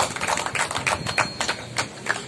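Scattered hand clapping from a small crowd, irregular and thinning out, stopping near the end.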